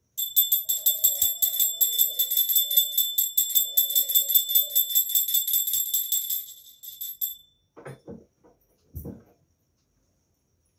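Hand-held puja bell rung rapidly and steadily, about six strokes a second, each stroke ringing at the same high pitches, until it stops about seven seconds in. A few short knocks follow near the end.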